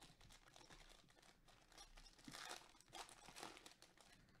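Foil trading-card pack wrapper being torn open and crinkled by hand. Faint, with a run of crackles that is thickest in the second half.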